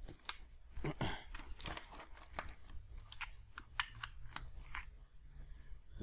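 Scattered small clicks, taps and crinkly rustles of hands and a tool handling the opened tablet's board and flex cables on a work mat, over a low steady hum.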